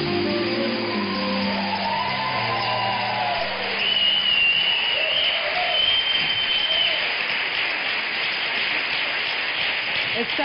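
Studio audience applauding and cheering while the house band's music plays out, the band's notes fading about halfway through. A long high whistle rises from the crowd over the clapping.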